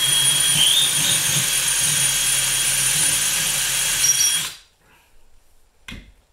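Cordless drill spinning a thin bit steadily through a metal TV wall bracket into a wooden 2x4 stud, drilling a pilot hole for the mounting screws; a steady whine for about four and a half seconds, then it stops abruptly. A short click follows near the end.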